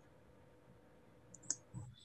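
Near silence with a faint steady hum, broken by a single sharp click about one and a half seconds in.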